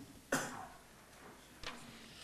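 A single cough about a third of a second in, followed by a quiet room with a faint short sound later.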